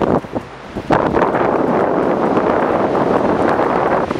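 Strong wind buffeting the microphone: a few gusts in the first second, then a loud, steady rush from about a second in.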